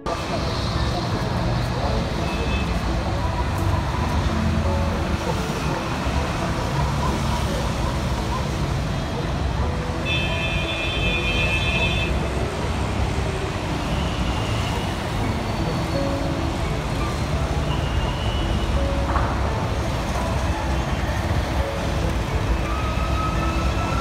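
Busy city street traffic noise: a steady rumble of passing vehicles with voices mixed in. A steady high tone, like a horn, sounds for about two seconds near the middle.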